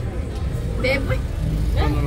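A few brief spoken words over a steady low rumble of outdoor background noise.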